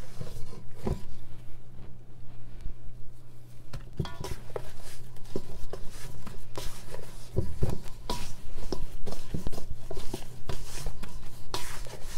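Kitchen-counter handling noises: irregular taps, clicks and rustles of hands working with bread dough, more frequent near the end, over a steady low hum.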